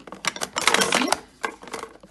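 Plastic and cardboard eyeshadow palettes clattering and knocking against each other as they are pushed by hand into a drawer too crowded for them to fit: a quick run of clicks, thickest about a second in.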